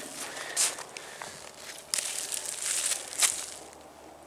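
Dry leaf litter, twigs and soil crunching and tearing as a moss-covered slab is pulled out of the ground by hand, in irregular crunches that are loudest in the second half.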